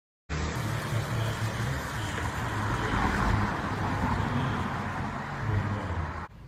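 Steady outdoor background noise: a constant hiss with an uneven low rumble under it, traffic-like.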